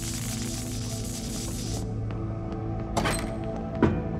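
Tense background music under the hiss and crackle of a video screen gone to static, which cuts off suddenly about two seconds in. Near the end come two sharp thumps, the second the loudest.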